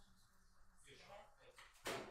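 Near-silent room tone with faint, low voices, then a single sharp knock near the end.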